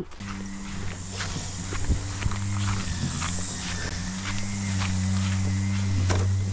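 Footsteps with the knocks and rustle of a folding camp table being carried, over a steady low hum.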